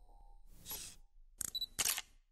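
Camera-shutter sound effects in a studio logo sting: a short burst of hissing noise about half a second in, then a quick run of sharp shutter clicks near the end.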